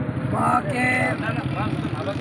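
Men's voices talking indistinctly, over a steady low rumble.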